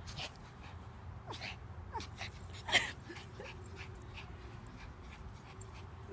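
Small dogs, a Pomeranian and a little white long-haired dog, playing together and giving a few short, high vocal sounds, the loudest about three seconds in.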